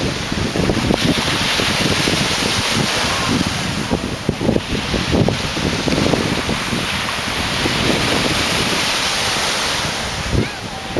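Wind buffeting the microphone in uneven gusts over the steady wash of sea waves.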